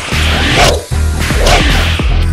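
Two whooshing sound effects for a web line snatching a toy gun away, over background music with a steady bass beat.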